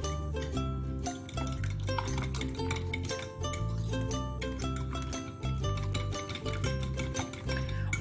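Background music with a steady bass line, over the light repeated clinking of a fork against a bowl as eggs are beaten.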